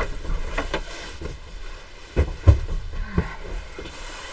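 Bolts of cotton quilting fabric being moved and unfolded on a table: cloth rustling, with a few short knocks and soft thumps, the loudest about two and a half seconds in.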